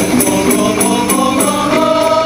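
Qasidah group music: hand-held rebana frame drums with jingles keep an even beat of a few strikes a second under sustained group singing, the held note stepping up in pitch about halfway through.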